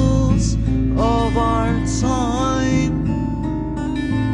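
Alternative rock with Middle Eastern and flamenco touches: guitars over sustained bass notes. A melodic line slides up in pitch, holds, and falls away twice.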